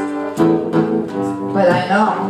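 Live acoustic guitar strummed about half a second in, with sustained notes ringing on and a voice coming in near the end.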